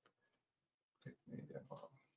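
Near silence, broken about a second in by a brief faint voice sound, a murmur or half-spoken word.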